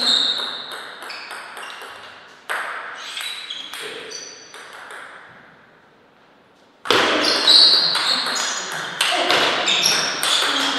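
Celluloid-type table tennis ball being struck back and forth in a rally, sharp clicks off the bats and the table, each with a short ringing ping. The hits thin out and stop around the middle, then a fresh run of quick hits starts about seven seconds in.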